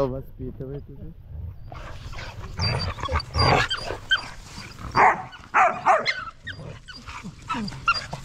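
A group of pit bull puppies whining with short high-pitched cries, the begging whine they make at adult dogs to ask for food. The noise grows busy from about two seconds in.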